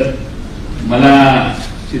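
A man speaking Marathi into a microphone: a short pause, then one drawn-out word about a second in.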